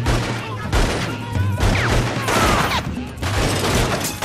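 Rapid handgun fire in a movie shootout, shot after shot in quick succession through the whole stretch, with voices crying out in the middle.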